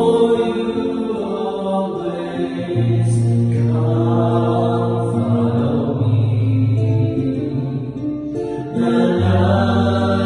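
Small mixed choir of men's and women's voices singing a slow sacred song in long held notes, with acoustic guitar accompaniment.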